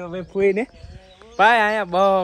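Farm livestock bleating: a short call about half a second in, then a longer, louder, wavering call from about one and a half seconds.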